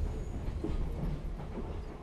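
Commuter train carriage running, heard from inside: a low rumble with a few faint clacks of the wheels over rail joints, fading away near the end.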